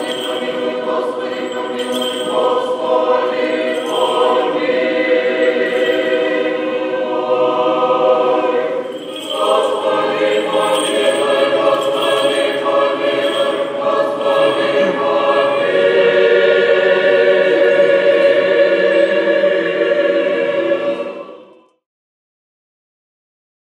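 Orthodox church choir singing unaccompanied in a reverberant church, with a short break about nine seconds in. A long chord is held near the end and then fades out.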